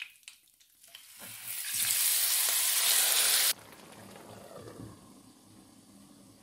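Marinated chicken pieces tipped into hot oil with cumin seeds and curry leaves: after a few light clicks, the oil starts sizzling about a second in and builds to a loud sizzle. About halfway through it cuts off abruptly, and a much quieter frying hiss follows.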